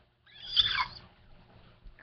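A three-week-old puppy's single high-pitched squeal, lasting under a second and falling in pitch at the end.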